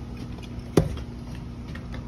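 A steady low background hum with one sharp knock just under a second in.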